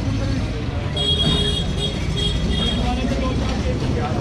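Busy market street ambience: a steady rumble of traffic with people talking close by. About a second in, a high-pitched ringing tone sounds in several short repeats.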